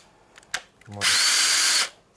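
Hilti SFH 144-A cordless drill driver's motor run briefly at its first speed setting: a whine rises as it spins up, holds steady for under a second, then cuts off abruptly when the trigger is released.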